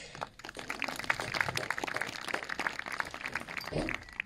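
Light applause from a small outdoor crowd: many separate hand claps that start just after the beginning and die away near the end.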